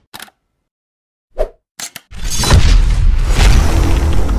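Channel logo intro sound effects: a few brief clicks and a pop in the first half, then a loud swelling whoosh with a heavy low rumble from about halfway.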